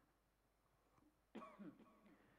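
Near silence in a pause of Quran recitation, broken by one faint, brief throat or voice sound about one and a half seconds in.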